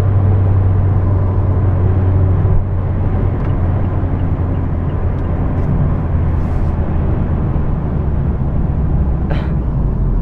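In-cabin sound of a 2017 Mazda Miata RF's 2.0-litre four-cylinder engine pulling hard on the highway to pass, over tyre and wind noise. About two and a half seconds in, the engine note drops lower and quieter and then carries on steadily.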